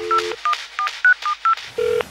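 Telephone keypad dialing tones, about six quick beeps, used as a sound effect in a break of a dance track where the beat drops out. A short low tone sounds at the start and again near the end.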